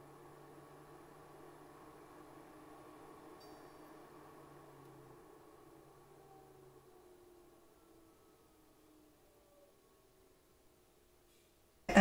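Greenote AP10 air purifier's fan running faintly at its medium setting: a soft steady rush of air with a low hum and a few faint, slowly falling tones, fading away to near silence about seven or eight seconds in.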